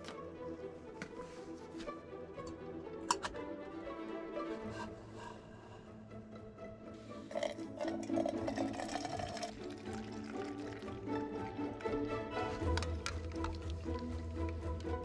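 Background music with steady held notes throughout. About seven seconds in, coffee pours from a titanium French press into a mug for two or three seconds. There is a sharp click about three seconds in.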